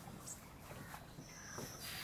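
Quiet lakeside outdoor ambience with a faint, distant bird call.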